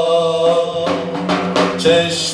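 Male voice singing a devotional hymn in long, held, slightly wavering notes over a steady drone, accompanied by a hand frame drum that is struck in a quick run of several strokes in the second half.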